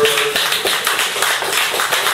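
Audience applauding, many hands clapping in a dense, steady patter.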